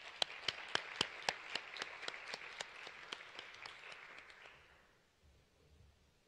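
Audience applauding, with one loud clapper standing out at about four claps a second; the applause dies away about five seconds in.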